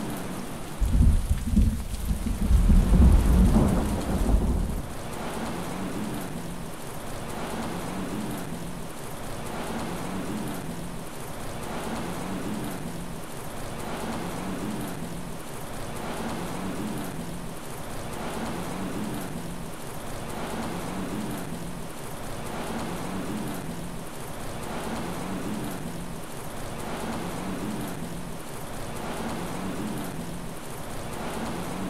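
Steady rain falling, with a loud low rumble of thunder from about one second in that fades out near five seconds.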